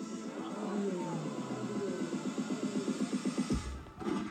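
Live rock band music: a fast-throbbing pulsing part over a low note that slides down about a second in, then heavy bass and drums come in near the end.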